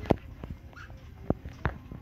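A few sharp clicks and knocks from a handheld phone being moved, the loudest just after the start, with a brief faint squeak near the middle.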